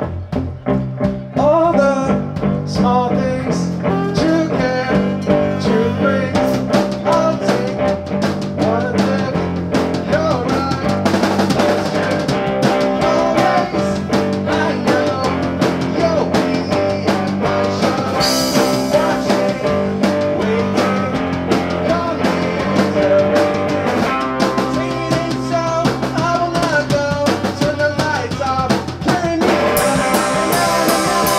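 Live rock band playing a song: electric guitar, drum kit and saxophone, with a man singing lead. The band comes in right at the start, and the sung melody enters about a second and a half later.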